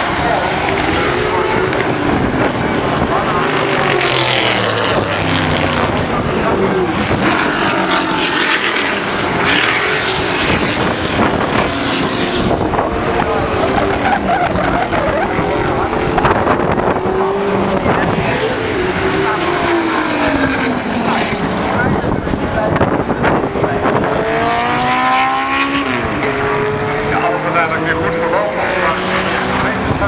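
Several historic racing cars passing on the circuit, their engines revving up and falling away through gear changes, with the pitches of different cars overlapping.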